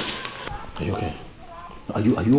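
A sharp crack at the very start, followed by raised, wordless voices.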